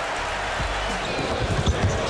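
Basketball game sound: steady arena crowd noise, with a ball bouncing on the hardwood court a few times in the second half.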